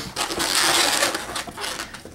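Latex twisting balloons rubbing and squeaking against each other in the hands, a dense crackly stretch of sound that eases off near the end.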